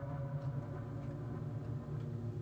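Low, steady ambient drone from the film's music score, a few sustained tones held without a beat.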